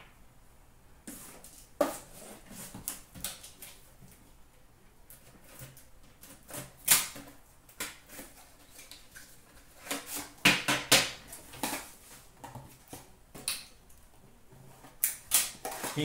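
Hands handling cards, a cardboard box and metal Upper Deck Premier card tins: irregular clicks, knocks and rustles, with louder knocks about seven seconds in and again around ten to twelve seconds.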